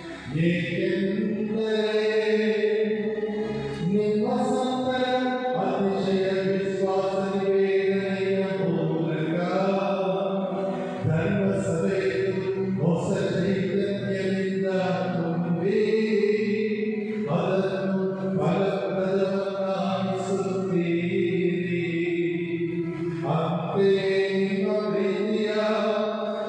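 Liturgical chant sung during Mass: a voice singing long, held notes in phrases several seconds apart, over a steady sustained tone.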